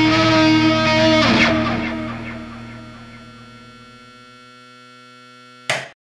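Closing chord of a heavy rock song: distorted electric guitars and bass hold a chord, with a last hit about a second and a half in. The chord then rings out and slowly fades. A short loud burst near the end cuts off abruptly into silence.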